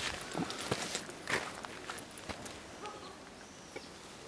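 Footsteps going down a steep dirt and rock trail: irregular scuffs and knocks, strongest in the first second and a half and then fading.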